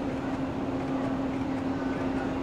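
JR West 117 series electric train creeping slowly into the platform, with a steady hum over a low, even noise.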